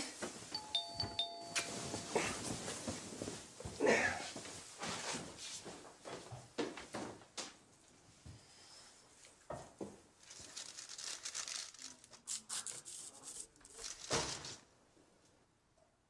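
A doorbell chiming a two-note ding-dong about half a second in. It is followed by scattered footsteps, knocks and rustling as someone hurries to the door.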